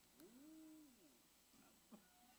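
Near silence, broken by one faint, distant hummed voice sound that rises and falls in pitch for under a second, like a murmur of agreement from a listener in the congregation. A soft click comes near the end.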